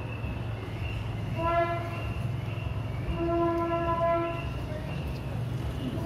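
A horn sounding off in the distance: a short blast, then about a second later a longer held blast, each one steady tone with no change in pitch. A steady low rumble runs underneath.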